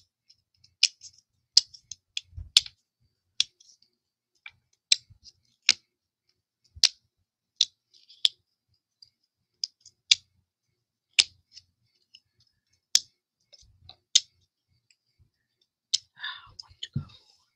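Sharp, irregular clicks, roughly one a second, from a pointed metal craft tool tapping on cardstock as small paper hexagons are nudged and pressed into place.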